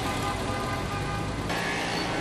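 Street traffic noise from cars stuck in a jam, with a car horn held over the first part; the sound changes abruptly about a second and a half in to a broader, steady traffic hiss.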